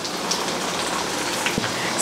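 Okra cooking on a gas stove: a steady sizzling, crackling hiss, with one soft knock about one and a half seconds in.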